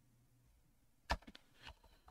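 A few computer keyboard keystrokes from about a second in, the first click the loudest, over faint room tone.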